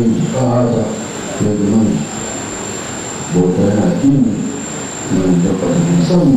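A man's voice, amplified through a microphone, chanting prayer phrases in a drawn-out, sing-song way: four phrases with short pauses between them. A faint, steady high-pitched whine runs underneath.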